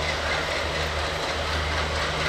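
WDG-3A and WDS-6AD diesel locomotives running with a steady low drone as they haul a passenger train slowly past.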